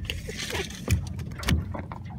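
A rainbow trout flopping in a rubber landing net on a boat floor: a brief wet rustle, then two thumps about half a second apart, over a steady low hum.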